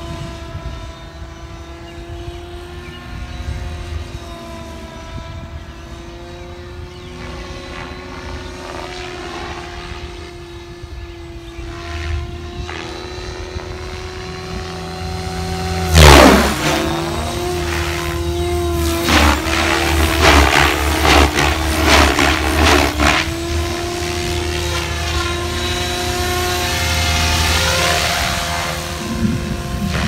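Goblin 570 Sport electric RC helicopter in flight: a steady whine from its motor and rotor blades, wavering slightly in pitch. About 16 s in it passes close by, loudest here, with a sharp fall in pitch. Several seconds of rapid choppy blade noise follow as it manoeuvres.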